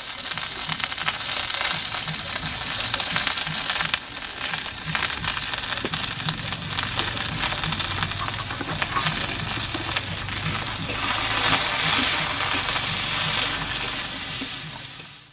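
Green peas and diced vegetables sizzling and crackling in hot oil in a metal wok, stirred with a metal spatula.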